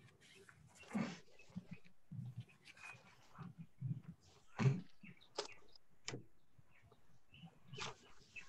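Faint, scattered knocks, clicks and rustles picked up by participants' open microphones on a video call, with a sharper knock about two thirds of the way through.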